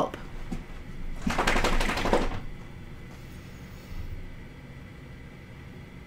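A quick run of rapid scratchy strokes lasting about a second, starting about a second in, followed by low room tone.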